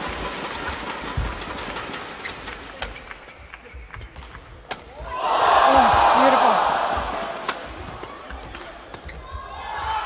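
Badminton rackets striking a shuttlecock in a rally, with sharp hits every second or two. Midway a hall crowd swells into loud cheering and shouting that fades over a couple of seconds.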